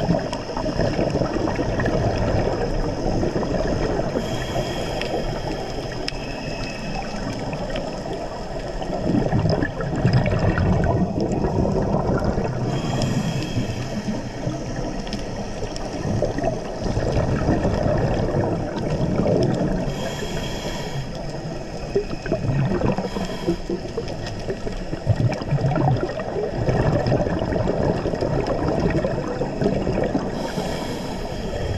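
Scuba breathing heard underwater: a diver's regulator hissing on each breath, with bubbling and gurgling from exhaled air, over steady water noise. The hiss comes in short bursts every several seconds, and the bubbling swells between them.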